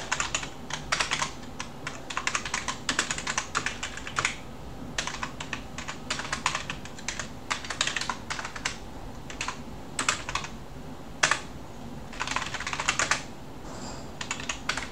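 Typing on a computer keyboard: quick bursts of keystrokes with short pauses between them. There is a single isolated keystroke about eleven seconds in, then a last short burst.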